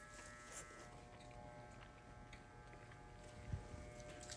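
Electric hair clippers buzzing faintly and steadily during a haircut, with one soft thump about three and a half seconds in.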